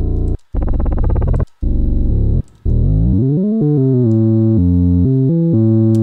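Synth bass patch ("Bass 05") played from Ableton Live's Simpler sampler. Three short held notes come first, separated by brief gaps. About three seconds in, a note glides upward and moves into a run of stepped notes that continues to the end.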